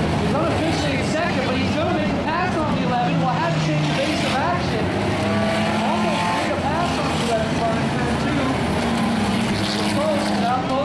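A field of race cars' engines running at once, many pitches overlapping and rising and falling as cars accelerate and pass.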